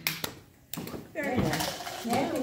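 Indistinct talk from several women around a table. It starts after a brief lull with a few sharp clicks near the start and picks up again about a second in.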